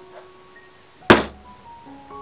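A single loud, sharp thump about a second in, with a brief decay, over soft background music.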